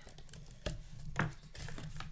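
Blade slitting the packing tape along the seam of a cardboard shipping case, with two sharp knocks against the box, about a third of the way in and again just past halfway.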